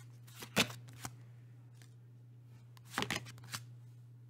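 Tarot cards being shuffled and handled by hand: short papery riffling bursts about half a second in and again around three seconds in, as a card is drawn from the deck and laid down.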